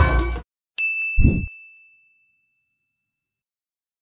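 Electronic background music stops short, then a single bright ding rings out and fades over about two seconds, with a brief low thud just after it: a channel's closing logo sting.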